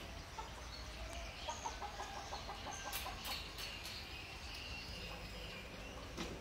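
Faint background clucking of a chicken, with a quick run of clucks about a second and a half in, and a few faint bird chirps and light clicks.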